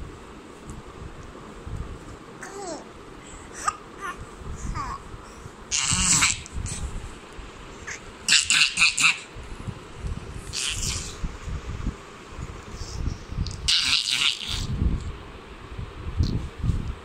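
A baby babbling and giggling in short, separate bursts, the loudest a little past the middle.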